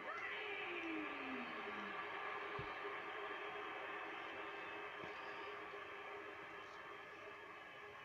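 Wrestling broadcast playing on a TV in a small room: steady arena crowd noise between announcements, easing off slightly toward the end, with a falling tone in the first two seconds.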